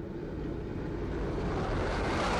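Tracked armoured vehicle's engine running, with a steady low drone under a rushing noise that grows louder toward the end.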